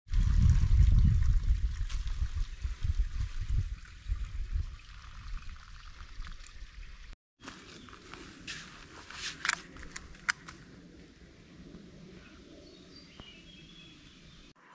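Footsteps of a hiker on a dirt trail strewn with dry leaves, a few crunching steps standing out in the second half. A loud low rumble on the microphone fills the first half, up to an abrupt cut to a quieter stretch.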